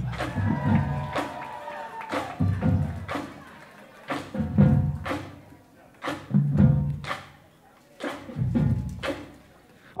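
Marching drumline bass drums struck in a slow pattern, a heavy low hit about every two seconds with sharp stick clicks in between.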